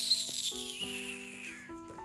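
Film soundtrack: sustained keyboard chords with a sudden hissing sweep effect that starts sharply and falls in pitch, fading out after about a second and a half.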